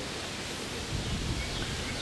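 Steady outdoor background noise: an even hiss with no distinct sound standing out.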